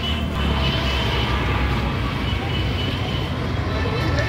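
Street traffic noise: a steady rumble of passing vehicles, with faint background voices.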